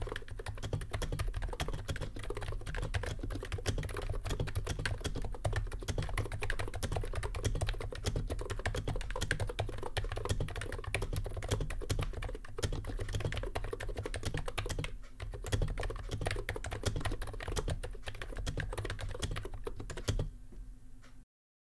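Continuous fast two-handed typing on an ABKO K935P V2 keyboard with Topre-clone electro-capacitive rubber-dome switches (apparently NiZ) under thick PBT Cherry-profile keycaps: a dense stream of keystrokes, with a short pause about fifteen seconds in.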